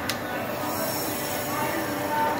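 Commercial espresso machine's pump running steadily as a shot begins to brew, with a click near the start.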